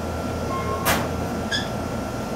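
Steady low machine hum of a shop's refrigeration and air conditioning, with a thin high whine running through it and a brief hiss about a second in.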